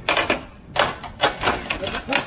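Wooden pergola frame cracking and creaking in four sharp bursts about half a second apart as it is pulled over and its joints give way.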